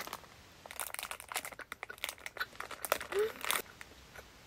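Clear plastic food wrapper crinkling in irregular bursts of crackles as a packaged waffle is handled and opened by hand.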